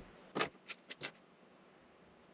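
Pencil tapping and ticking marks onto layout paper against a steel rule: four short, light ticks within the first second or so.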